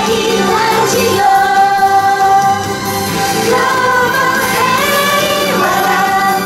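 A pop song sung by a group of girls over an instrumental backing, with long held sung notes.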